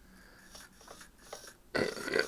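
JR 8711 digital servo making a few faint, short movement sounds as it is driven from the transmitter stick, with no buzzing or jitter: it works properly.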